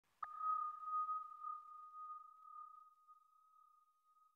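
A single clear ping: one pure high tone with a sharp attack about a quarter second in, ringing on and slowly fading away.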